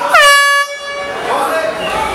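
One loud air-horn blast of about half a second, dipping slightly in pitch as it starts and then holding steady, over crowd noise; at this fight the horn marks the end of the round.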